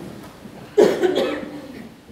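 A single cough about a second in, sudden and loud, fading quickly.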